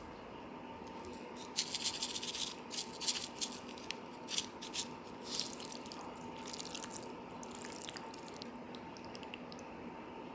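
Plastic spoon stirring saucy glass noodles in the foil tray of a self-heating hotpot: a run of wet clicks and scrapes, busiest in the first half and thinning out after about eight seconds.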